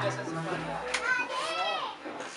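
Overlapping chatter of a group of adults gathered together, with a high-pitched child's voice rising over it about a second in.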